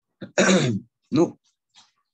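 A man clearing his throat twice: a longer rasping clear, then a shorter one about a second in.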